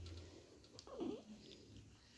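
A newborn baby's brief, faint whimper about a second in.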